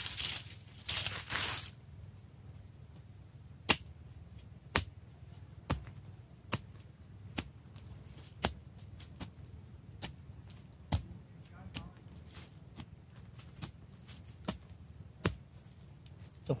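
Large knife blade stabbing down into the soil to dig out a tree's root ball: a sharp chop about once a second, after a second or two of scraping at the start.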